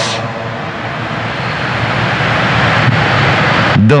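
A loud, even rushing roar with no clear pitch, building slowly over a few seconds and breaking off shortly before the end, like an aircraft passing overhead.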